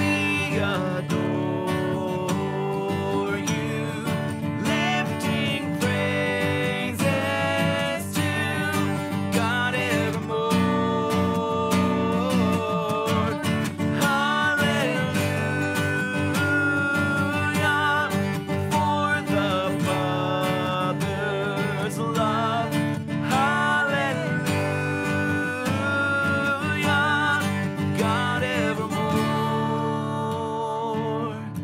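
A man and a woman singing a worship song together, accompanied by a strummed acoustic guitar.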